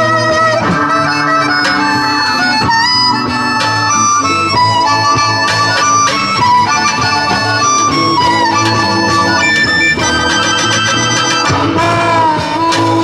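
Live blues harmonica solo played through a microphone, with some notes bent in pitch, over strummed acoustic guitar and a bass line.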